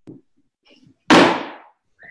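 A single sudden loud bang about a second in, dying away over about half a second, with faint rustling before it.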